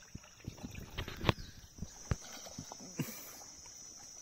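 Irregular hard knocks and clatters on a kayak, the loudest about a second in, with a steady high-pitched drone underneath.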